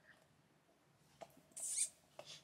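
Quiet room with a faint click a little past halfway, then a brief high-pitched squeak near the end.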